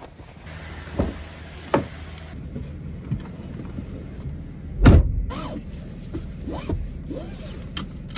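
Someone getting into a car: a few sharp clicks and knocks, then one loud thump about five seconds in, typical of the car door shutting, with the seatbelt being pulled across and smaller knocks after it.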